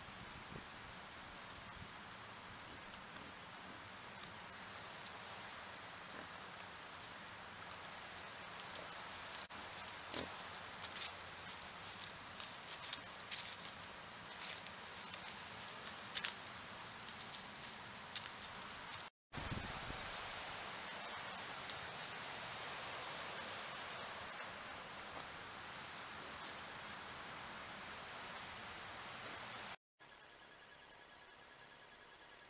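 Trail camera's own microphone at night: a steady hiss, with a run of short rustles and clicks in the middle from a wild boar foraging in the leaf litter. The sound drops out for an instant about two-thirds of the way through.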